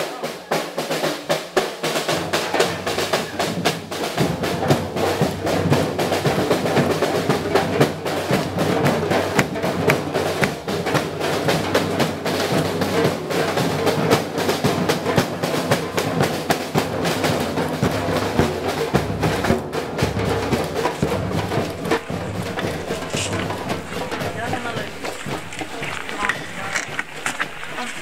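A group of drummers playing a fast samba-style rhythm together on large metal-shelled surdo bass drums and other hand-held drums, with dense, steady strokes throughout. It stops abruptly near the end.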